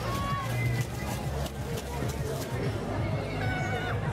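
Purebred Arabian horse whinnying over steady crowd chatter, with short high calls near the start and a longer pitched call near the end.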